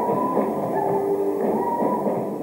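Live rock band playing: a drum kit with held electric guitar notes over it, sounding muffled and thin, with little bass or treble.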